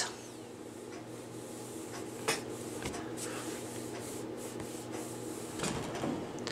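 Faint, steady rubbing of a clothes iron's soleplate held on a paper towel over a silicone mat, with a couple of soft taps, the last as the iron is lifted near the end.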